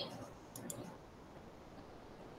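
Two quick, faint computer mouse clicks in close succession about half a second in, then quiet room tone.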